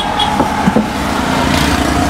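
A small petrol engine running steadily, with a continuous low hum.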